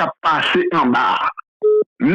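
A man speaking, then near the end a short steady telephone beep of about a quarter second, like a busy-signal tone on a phone line.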